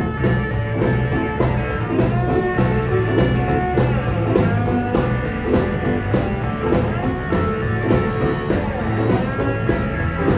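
Live electric blues band playing an instrumental stretch: two electric guitars, electric bass and a drum kit keeping a steady beat, with no vocals.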